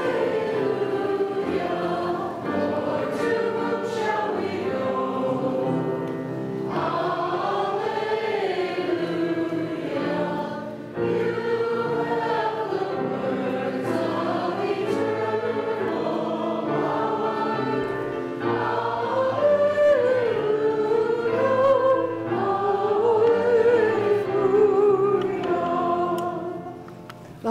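A church congregation singing together, phrase after phrase, over sustained low accompanying notes.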